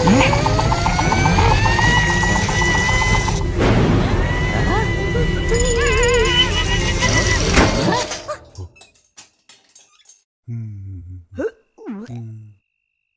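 Cartoon score with sound effects: rising pitch glides, then wobbling tones, cutting off abruptly about eight seconds in. After that it is nearly quiet, apart from a few small clicks and a couple of short pitched sounds near the end.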